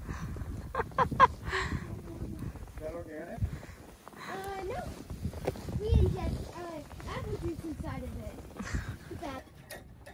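Indistinct voices of people talking, with pauses, over a low rumble.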